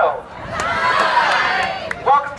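A crowd of fans cheering and shouting, many voices at once, swelling up about half a second in and dropping away just before the end.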